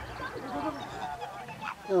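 Spectators' low, voice-like murmurs and exclamations, ending in a loud "oh" as the chase unfolds.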